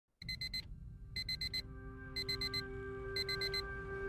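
Digital alarm clock beeping in bursts of four quick beeps, repeating about once a second, with steady sustained tones fading in underneath.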